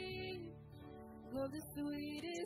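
Live church worship band music: voices singing over guitars and drums, with a brief softer passage in the middle.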